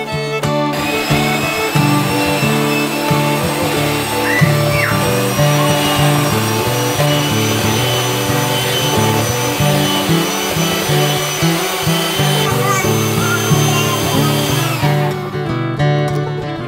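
Electric hand mixer beating batter in a stainless steel bowl: a steady motor whine and whirr that starts about a second in and stops about a second before the end. Instrumental background music plays underneath.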